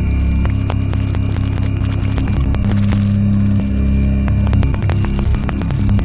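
Electronic drone music: sustained low bass tones shift in blocks every second or two, with a steady higher tone taking over in the middle, under a dense scatter of soft crackling clicks.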